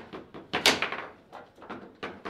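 Foosball table in play: a quick run of sharp knocks and clacks from the ball striking the player figures and table walls and the rods being worked, the loudest hit coming about half a second in.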